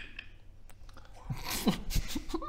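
Stifled, breathy laughter from the players, starting about a second and a half in, after a quiet stretch with a faint click or two.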